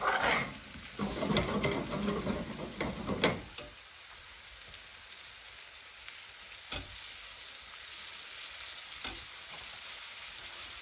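A metal spatula stirs and scrapes beans and spice paste around a metal pan for about the first three and a half seconds, then the pan sizzles steadily on its own. Two short knocks come later.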